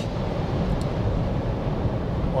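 Cabin noise inside a Mercedes EQC 400 electric SUV cruising at about 120 km/h: a steady low road rumble with a little wind noise and light tyre noise.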